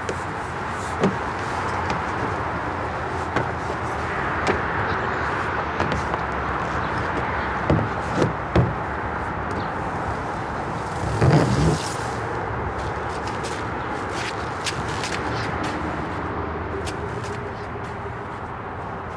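Steady outdoor street noise with passing-traffic hum, broken by a few knocks and thumps from a child climbing on a plastic-and-metal playground climbing frame. About eleven seconds in comes a louder, second-long rushing rub with thumps as he slides down a plastic slide.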